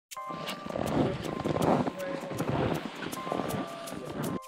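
Background music with a steady beat and held tones, with people's voices under it.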